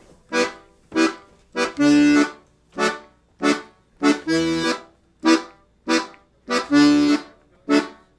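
Ottavianelli 72-bass piano accordion's left-hand bass and chord buttons playing a 6/8 Irish jig accompaniment. It goes as short chord stabs with a longer held note about every two and a half seconds, alternating E minor and D major: the warm-up skeleton of a jig's accompaniment.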